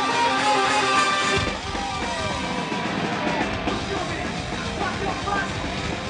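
Live metal band recorded from the crowd: electric guitar with sliding notes, then the heavy low end of the full band comes in about a second and a half in and carries on loud and dense.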